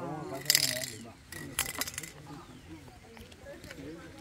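Low murmur of a group of people talking quietly in a huddle, with two short hissing bursts, about half a second in and again about a second and a half in.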